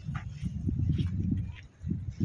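Wind buffeting the microphone in uneven low gusts that drop out briefly near the end, with faint voices of people on the beach behind it.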